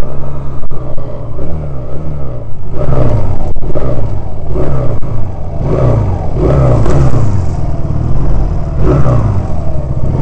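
Honda CD185's small four-stroke parallel-twin engine running as the bike is ridden, its pitch rising and falling over and over.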